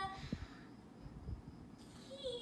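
A pause in the dialogue: quiet room tone with a few faint low thumps. A woman's voice trails off right at the start.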